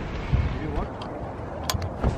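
Faint background voices over outdoor ambient noise, with a few short light clicks near the end.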